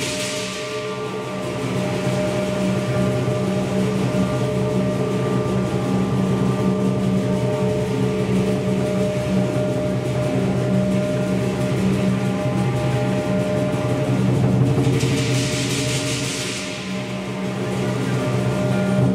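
Southern lion dance percussion playing without pause: a lion dance drum beaten steadily under ringing gong and clashing cymbals. The cymbals surge louder at the start and again near the end.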